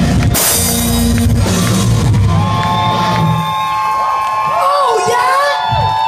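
Live rock band with a cymbal crash near the start, bass and drums dropping out about three and a half seconds in while a held high note rings on. Audience members yell and whoop.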